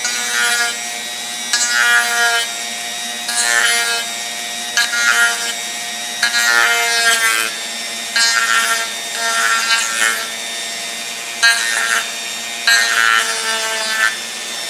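Chicago Electric rotary tool running at its lowest speed, its bit grinding down a squared corner of a Kydex holster in long strokes. About nine louder grinding passes, roughly a second and a half apart, sound over the motor's steady whine.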